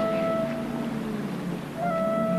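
Synthesizer score of held tones. The higher notes drop away about half a second in, leaving softer low notes, and a new sustained chord swells in just before the end.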